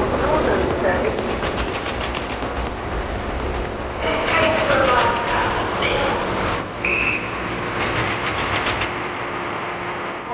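Passenger train running in at a station with a steady low rumble and regular clicking of wheels over the rails, mixed with the voices of a crowd of passengers. A short high tone sounds about seven seconds in.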